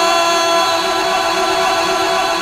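A man's voice holding one long sung note through a public-address system, steady in pitch after rising into it, slowly fading near the end: a drawn-out devotional call.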